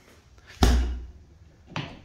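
Punches landing on a foam- and fleece-filled wrecking-ball boxing bag: a loud, deep thump about half a second in and a lighter one near the end, each dying away quickly.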